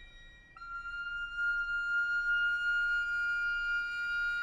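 Contemporary chamber music for wooden recorder and strings. A held high note fades away, then about half a second in a new high note enters with a slight scoop in pitch and is held steady.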